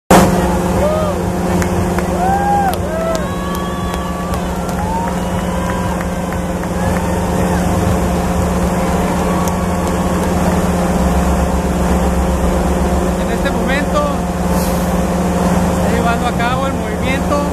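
Caterpillar excavator's diesel engine running with a steady hum while the boom lifts the bucket, with voices talking over it.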